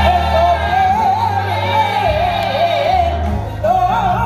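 A women's gospel group singing live into microphones: one strong lead voice runs and wavers up and down in pitch over steady low instrumental accompaniment, with a short break about three and a half seconds in before the voice comes back in.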